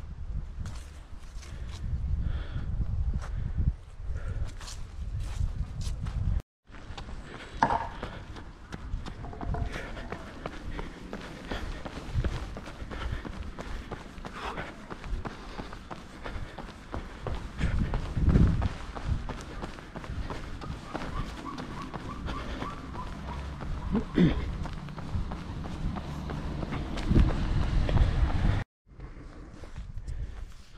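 A runner's footsteps while jogging, with short steps heard over a low rumble on the microphone; the sound cuts out briefly twice, about six seconds in and near the end.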